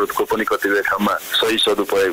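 Speech only: a Nepali radio news report being read.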